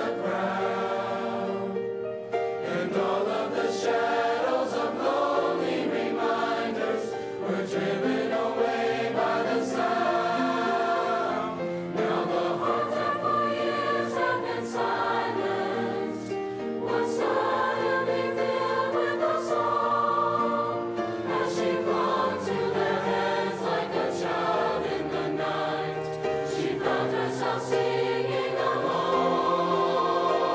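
A girls' choir singing a Christmas song in full harmony, with long held notes.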